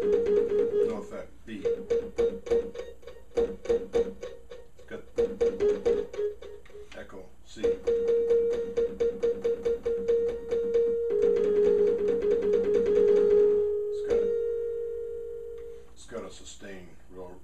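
Alesis QS8 synthesizer playing its '3rdHrmPerc' preset: quickly repeated percussive notes on two close pitches, with short breaks, speeding into a fast run in the second half. Near the end the repeats stop and a held two-note chord fades away.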